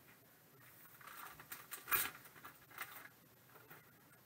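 Hard plastic graded-card cases (PSA slabs) being handled: a few faint clicks and scrapes as one is set on a stand and the next is picked up, the loudest about two seconds in.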